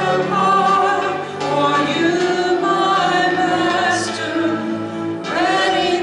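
Two women's voices singing a slow worship song in long held notes, accompanied by an electric keyboard.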